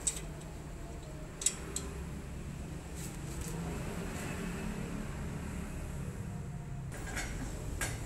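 A few sharp metallic clicks and knocks from a jacked-up car's front wheel being rocked by hand: two come about a second and a half in, and more near the end. They are play in the suspension at a ball joint that the mechanic has judged worn and loose. A steady low hum runs underneath.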